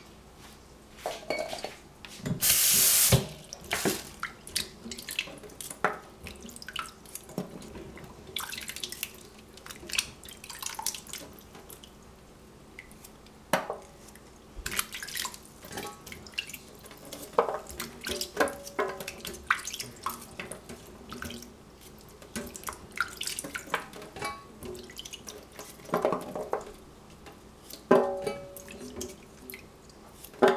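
Baby yellow squash being washed by hand in a small steel saucepan of water in a stainless steel sink: irregular splashing, dripping and light clinks of the pot and a knife, with a brief loud rush of water about three seconds in.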